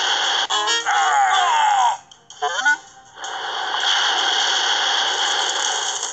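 Storm soundtrack of an animated storybook app: steady rain-and-storm noise with background music, and falling-pitch cries gliding over it. The sound drops out briefly about two seconds in, then comes back.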